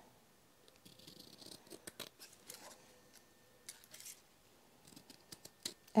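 Scissors cutting around the edge of a paper tag still wet with glue, a series of faint, irregularly spaced snips.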